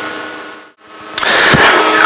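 Background song fading out to a brief dip, then the steady cabin noise of a Piper Cherokee's engine and propeller fading in from just past the middle.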